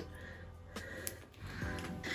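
A few light clicks and scratches of fingernails picking at and peeling the protective plastic film off a metal handbag logo plate, over faint background music.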